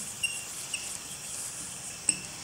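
Marker pen writing on a whiteboard: a few short, faint squeaks over a steady low hiss.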